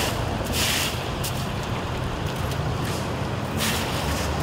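Stiff push brooms scraping and swishing over wet gravel and broken asphalt as a pothole is swept out, a few strokes standing out, over a steady low engine rumble.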